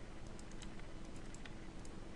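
Faint, irregular clicking of a computer keyboard and mouse, about a dozen clicks in two seconds, as lines are selected and erased in CAD software. The clicks sit over a steady low hum and hiss.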